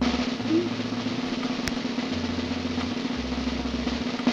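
Snare drum roll sound effect, steady for about four seconds and cutting off suddenly as the winner comes up: the suspense roll of a random winner draw.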